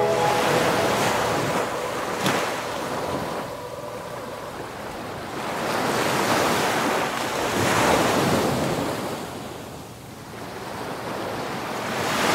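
Ocean surf: breaking waves rushing in long surges that swell and ease, loudest about six to eight seconds in and fading near ten seconds before building again.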